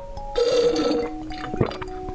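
A thick jelly drink slurped up through a straw: one loud, wet, gurgling suck about half a second long, starting a third of a second in, followed by a short click.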